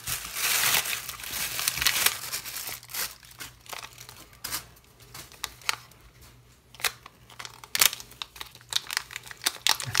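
Plastic packaging crinkling and rustling as a plastic mailer and a small plastic bag are handled and opened by hand. The crinkling is dense for about the first three seconds, then turns sparser with a few sharp clicks.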